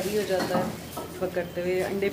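Food sizzling as it fries in hot oil, a steady hiss heard under a woman talking.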